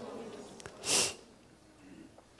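A man's short, quick breath drawn in close to a handheld microphone, about a second in.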